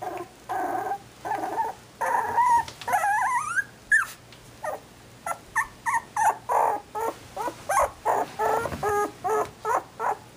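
Young Shetland Sheepdog puppies whining and yipping in a string of short, high-pitched calls, with a longer rising whine about three seconds in.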